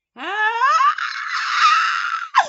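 A woman's loud "Ah!" that rises in pitch and turns into a high, strained scream about a second in, held until it drops away in a falling glide at the very end.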